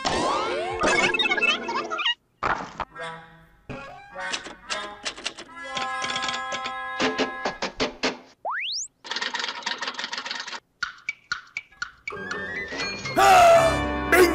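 Cartoon score: a run of short, choppy musical notes and clicky sound effects, with a single quick rising glide about two-thirds of the way through and a louder, wavering passage near the end.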